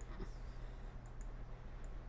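A few faint, sparse clicks from a laptop pointer as chess pieces are dragged on an on-screen board, over a low steady room hum.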